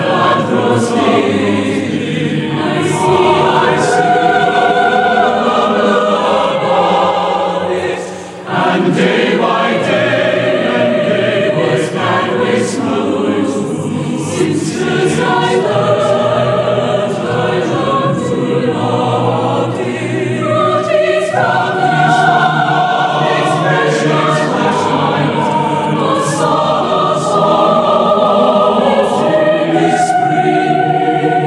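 Mixed choir of men's and women's voices singing sustained chords in long phrases, with one brief break about eight seconds in.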